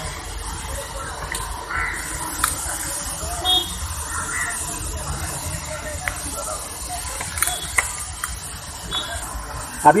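A few short metallic clicks and knocks of a spline socket and bar working on a Volkswagen Polo 1.2 TDI's crankshaft pulley bolts as they are loosened, over steady workshop background noise with faint voices.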